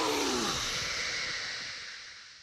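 Anime sound effects as a giant snake's open jaws swallow a character: a falling cry trails off about half a second in, then a breathy hiss fades slowly away.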